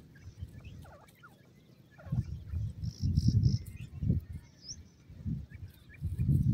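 Francolin chicks giving short, high-pitched peeps: a few falling notes early, a quick cluster of three about three seconds in, and a small rising chirp near the end. Under the peeps are irregular low rumbling bursts.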